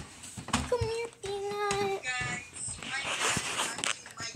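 A young girl's voice singing a few long, held notes, with rustling as the phone is carried about.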